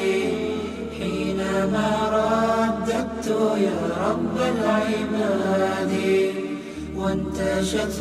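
Chanted a cappella vocal music in a nasheed style, sustained sung notes over a low steady drone.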